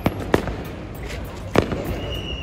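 Fireworks going off: a few sharp bangs, two close together near the start and the loudest about a second and a half in, over a steady background din.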